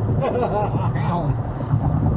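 Steady low road and engine rumble inside a moving car's cabin, with a faint voice over it in the first second or so.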